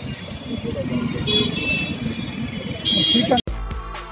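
Busy crowd chatter with street traffic, with a vehicle horn sounding briefly twice. About three and a half seconds in it cuts off suddenly and background music starts.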